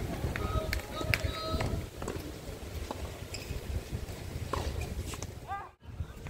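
Doubles tennis on a hard court: players' and onlookers' voices and calls, with a few sharp knocks of racquet on ball, over a low steady rumble. The sound cuts out briefly near the end.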